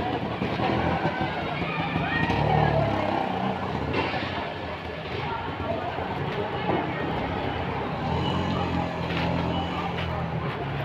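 Street noise with a motor vehicle engine running, swelling about two to three seconds in and again near the end, over indistinct voices.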